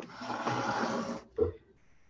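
A long, even rush of breath, a heavy exhale into a close microphone, lasting a little over a second and cutting off, followed by a short low sound.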